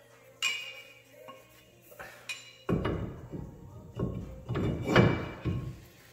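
Brake rotor being fitted onto a wheel hub: two sharp metal clinks that ring briefly, then about three seconds of irregular scraping and knocking of metal on metal as the rotor is worked over the studs and seated.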